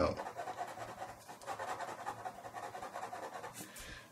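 Black ballpoint pen scratching across paper in quick, repeated hatching strokes, layering lines to build up darker tone.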